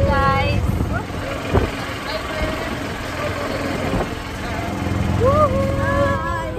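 Steady rumbling ride noise of an open golf cart on the move: motor, tyres on the road and wind across the microphone. A woman's voice is heard briefly at the start, and a drawn-out call in a voice rises near the end.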